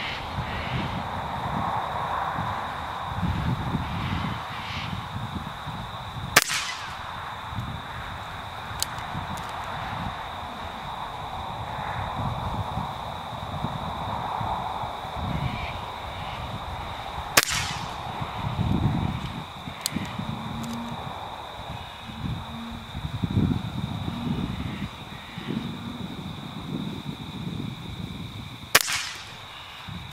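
BSA Scorpion .22 pre-charged pneumatic air rifle fired three times, about eleven seconds apart, each shot a single sharp crack.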